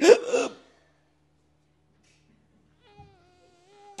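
A sharp gasping breath drawn in close to a handheld microphone, then near silence as the breath is held, with a faint steady hum in the last second.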